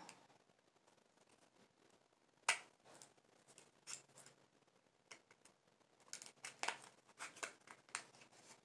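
Faint clicks and snips of tape being cut and picked off a small highlighter compact to get it open: a sharp click about two and a half seconds in, a few scattered ones after, then a quick run of them near the end.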